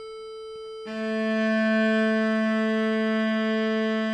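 An electronic drone device holds a steady A, and a little under a second in a cello's open A string is bowed against it in one long sustained stroke. The bowed string is close to the drone's pitch but not perfectly in tune with it.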